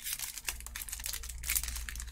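Clear plastic packaging sleeve crinkling with quick crackles as a makeup brush is handled and slid out of it.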